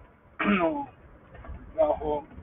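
A man clears his throat once, about half a second in, with another short vocal sound near the end. A faint low rumble runs underneath.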